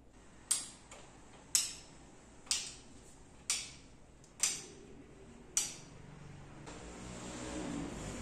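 Sharp plastic clicks from the opened Yamaha PSR-730 keyboard's key and contact assembly being worked by hand, six in all about a second apart. A faint rustle builds near the end.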